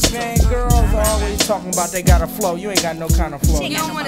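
Hip hop track: rapped vocals over a drum beat and bass.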